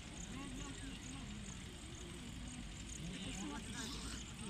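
Faint, indistinct voices of onlookers talking over a steady low rumble, likely wind on the microphone.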